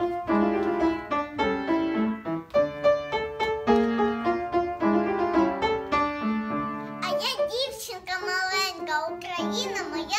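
Piano introduction of single notes and chords, joined about seven seconds in by a solo singing voice with vibrato, the piano carrying on beneath it.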